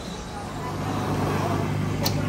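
Coffee vending machine starting to make a drink: a steady low motor hum comes in about half a second in and grows louder.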